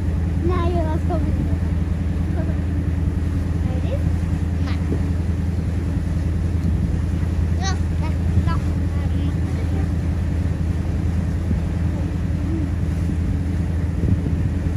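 Boat engine running with a steady low drone, heard from on board while the vessel moves over calm water.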